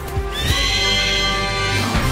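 Cartoon bird-of-prey screech: one long cry sliding slightly downward in pitch, over background music.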